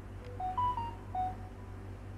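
Short electronic computer chime: about five quick beeps stepping up in pitch and then back down, over a steady low hum.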